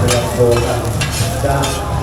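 Two metal spatulas scraping and clinking repeatedly on a large flat iron pan as oyster omelette (hoi tod) batter and egg sizzle and fry on it.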